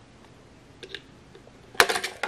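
Plastic housing of a GFCI outlet being pulled apart by hand: faint clicks about a second in, then a sharp clatter of plastic and metal parts near the end as the case comes open.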